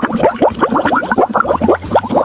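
Coloured water poured from a glass onto a plate, splashing and gurgling as a quick run of rising plops.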